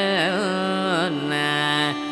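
Carnatic vocal music: a male voice sings heavily ornamented notes that oscillate quickly in pitch (gamakas), then settles on a long held lower note, with a violin shadowing the melody and no percussion.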